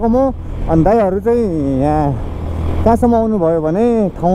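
A person's voice talking over the steady low hum of a riding motorcycle, with a short pause just after two seconds in; the hum fades a little after three seconds.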